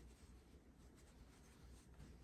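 Near silence, with faint scratchy rubbing of yarn drawn over a metal crochet hook as a stitch is worked.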